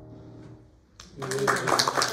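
The last of a piano-and-voice song dies away, then after a brief hush a small congregation breaks into applause about a second in.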